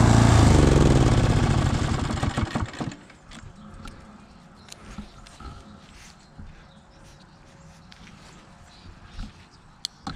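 Toro TimeMaster 30 lawn mower engine shutting off, its pitch and level falling as it spins down to a stop over about three seconds. A few faint clicks follow.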